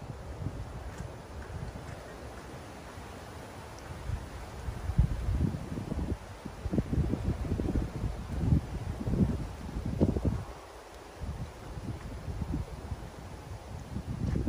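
Wind buffeting the microphone in irregular low gusts, heaviest from about five to ten seconds in, with leaves rustling.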